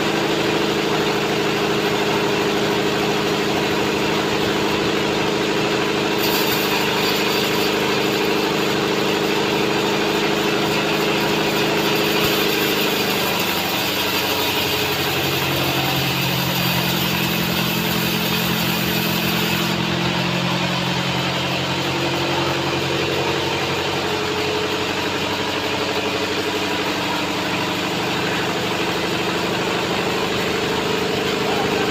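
Log band sawmill running steadily as its blade saws through a log. The machine's note drops in pitch about halfway through and climbs back near the end, with a high hissing from the cut over the middle stretch.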